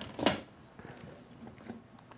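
Light handling sounds of kitchen utensils and containers on a counter: a couple of short knocks near the start, then faint small ticks.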